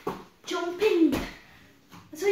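A girl's short wordless vocal sounds, the second one falling in pitch, with a soft thump of hands and feet landing on a folding foam gymnastics mat about a second in during a cartwheel.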